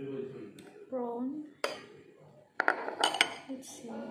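Metal spoon clinking against ceramic bowls and plate during a meal: one sharp clink about one and a half seconds in, then a quick cluster of clinks with a brief ringing tone a little later.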